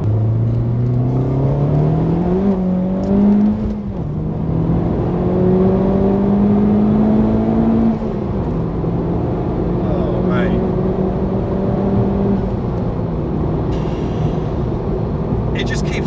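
Honda Civic Type R FK8's 2.0-litre turbocharged four-cylinder engine, heard from inside the cabin under hard acceleration. The engine note climbs, drops at an upshift about four seconds in, and climbs again in the next gear. It drops at a second upshift around eight seconds, then holds a steady note for a few seconds as the car keeps pulling in a high gear.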